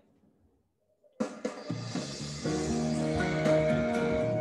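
Recorded music starts abruptly about a second in, after near silence: the instrumental intro of a song's backing track, with drum hits under held chords.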